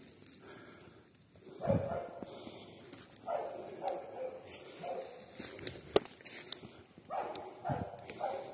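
Hunting dog barking in short bursts, several times, while it stays on a wounded wild boar in the dark. Two sharp clicks come about six seconds in.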